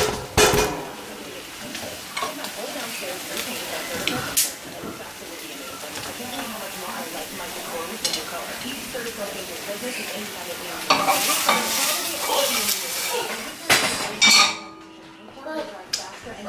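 Scrambled eggs sizzling in a nonstick frying pan while a slotted spatula stirs and scrapes them, with a few knocks of the spatula against the pan. There is a louder stretch of scraping and clatter about eleven seconds in, and the sizzle dies down near the end.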